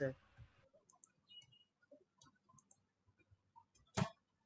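Near-quiet room tone with a few faint small ticks, then a single sharp click near the end.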